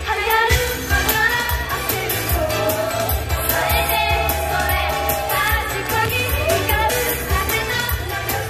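Japanese idol pop song performed live: young women's voices singing over a backing track with a steady beat and bass.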